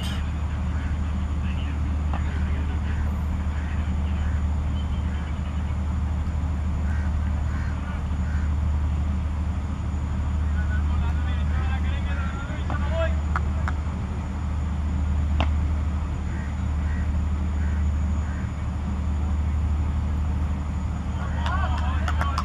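Steady low rumble of outdoor background noise, with faint distant voices and a few faint sharp knocks in the second half.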